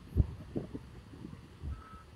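Wind buffeting an outdoor phone microphone in uneven low gusts and thumps, with a faint, brief steady tone near the end.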